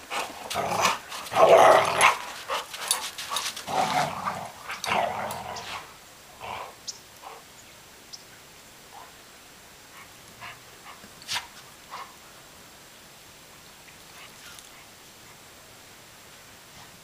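Two dogs, a Labrador retriever and a Rhodesian Ridgeback mix, growling in play while tussling over a tennis ball, in rough bursts through the first six seconds. After that only a few faint scattered clicks.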